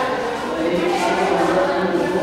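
Many people's voices overlapping at once, with one low note held steady for about a second in the middle, like group singing.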